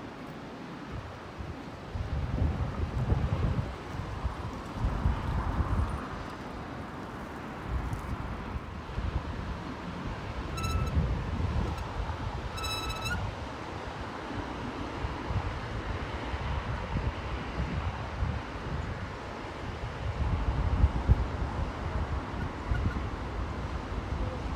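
Wind buffeting the microphone in gusts, a low rumble that surges and eases. Near the middle come two short high-pitched tones about two seconds apart.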